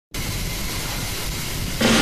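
A steady rushing hiss, with some low rumble, then music comes in just before the end.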